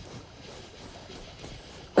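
Faint, steady rush of a flowing river, with no distinct events.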